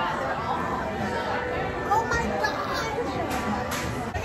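Indistinct chatter of many voices in a busy shop, steady with no clear foreground speaker.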